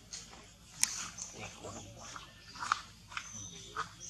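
Long-tailed macaque mother and infant making a few short, sharp squeaks and clicks, the loudest about a second in, with more near the end.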